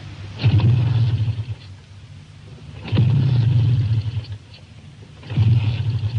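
Motorbike engine kick-started three times, each time rumbling for about a second and then dying away without catching.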